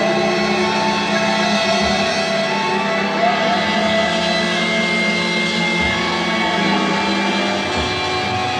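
A live rock band playing a slow, droning passage of long held tones, a few of them sliding slowly in pitch, with no steady beat. It is heard on an amateur reel-to-reel tape made from the audience.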